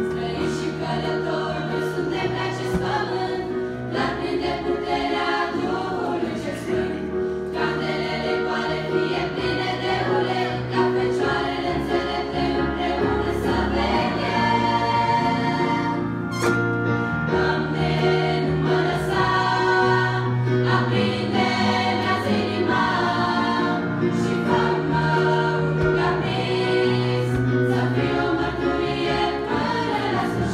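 Girls' choir singing a Christian song, accompanied by a digital piano holding sustained low notes under the voices.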